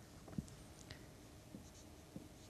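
Faint marker pen strokes and taps on a white writing board as a word is written.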